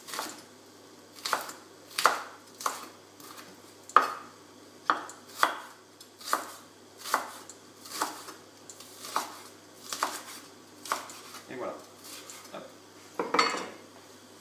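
Chef's knife slicing leek whites into very thin strips on a wooden cutting board, each stroke ending in a sharp knock of the blade on the board, roughly once a second and slightly uneven.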